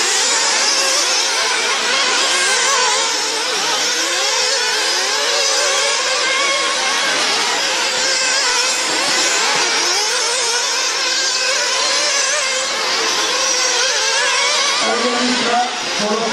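Several 1/8-scale nitro RC buggy engines running at high revs together, their pitches overlapping and constantly rising and falling as the cars accelerate and back off around the track.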